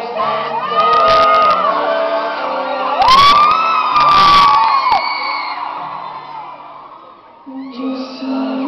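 Concert audience screaming and cheering over the band's music, with long high-pitched screams about a second in and again from about three to five seconds. The crowd noise then dies down, and an acoustic guitar starts strumming near the end.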